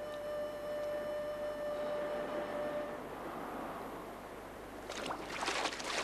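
Splashing of feet running through shallow sea water, starting about five seconds in as a dense, irregular patter of splashes. Before it, a held music note ends about halfway through over a steady wash of noise.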